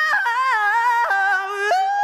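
Solo R&B vocal sung unaccompanied, moving through several held, wavering notes in a short melodic run, with no beat underneath.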